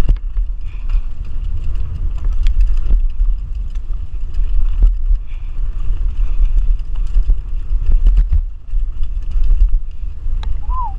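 Mountain bike ridden fast down a dirt trail, heard from a GoPro on the rider: continuous wind buffeting on the microphone and tyre rumble, with scattered knocks and rattles as the bike goes over bumps.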